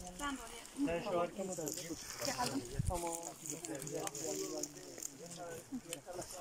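Indistinct voices of several people talking, with a brief low thump about three seconds in.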